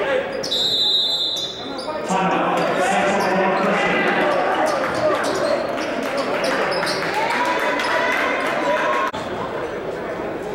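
Basketball gym sounds: players and spectators talking over each other, a basketball bouncing, and a short shrill high whistle about half a second in.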